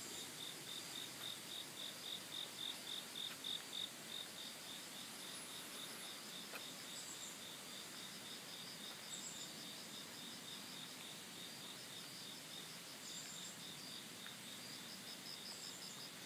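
Insects chirping, faint: a steady run of high pulses, about four a second, for the first few seconds, then a fainter, faster trill a little higher in pitch that strengthens near the end, with a few short, very high chirps scattered through.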